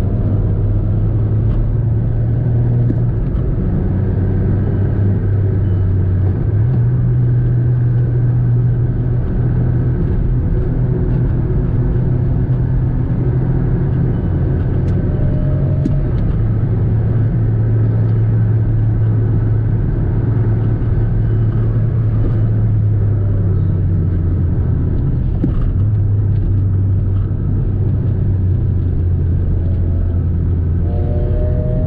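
Volkswagen Polo heard from inside the cabin while driving: a steady low engine drone with road and tyre rumble, its pitch stepping up and down a few times as the revs change.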